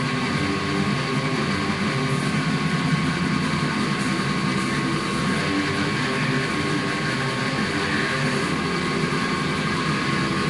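Jackson JS30RR electric guitar through a Bugera 333 high-gain amp, playing a steady, dense distorted metal riff.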